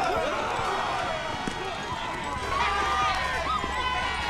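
A group of young men shouting and yelling at once as they run, with no clear words.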